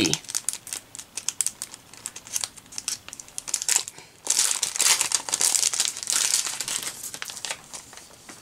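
Plastic packaging of a sticker pack crinkling as it is handled and opened by hand: scattered sharp crackles for the first few seconds, then a few seconds of denser, continuous crinkling.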